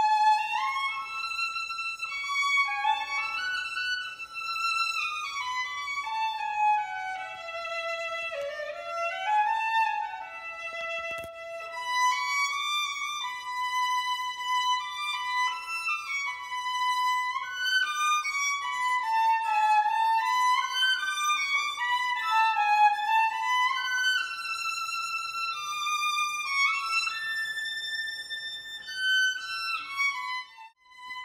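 Unaccompanied solo violin made by Charlélie Dauriat, bowed in a stone crypt: a single melodic line in the instrument's upper-middle range, falling in a run to its lowest notes about eight seconds in and climbing back up.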